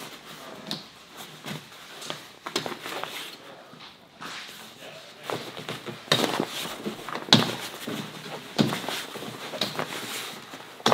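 Snap fasteners on a rooftop tent's fabric popping apart one after another as the fabric is pried off the frame, with fabric rustling between. Several sharp pops come at irregular intervals, the loudest in the second half.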